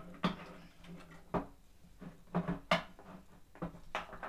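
Metal parts of a CNC router kit clinking and knocking against each other and against the frame as they are handled and fitted: about half a dozen short, sharp knocks.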